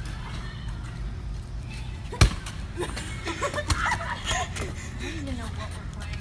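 A single sharp knock about two seconds in, with a couple of fainter knocks after it, over a steady low rumble. Voices call out in the second half.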